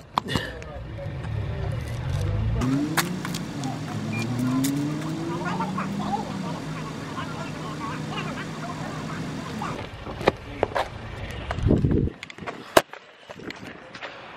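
Car engine running, revving up twice a few seconds in with a rising pitch, then settling, with scattered clicks and muffled voices.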